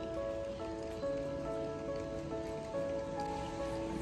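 Background music: a soft instrumental melody of held notes that change every half second or so.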